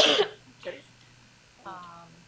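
A person clearing their throat with one loud, sharp cough at the start, followed by a short voiced hum near the end.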